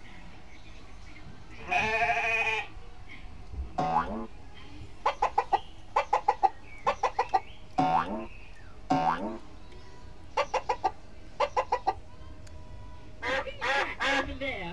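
Recorded farmyard chicken sounds played over a ride's speakers: one longer call about two seconds in, then several runs of quick clucks.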